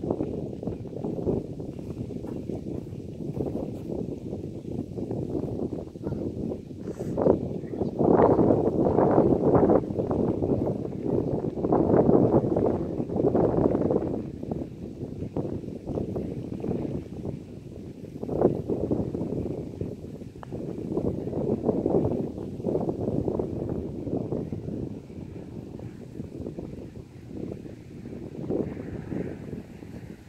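Wind buffeting the microphone: a low, noisy roar that swells and fades in gusts.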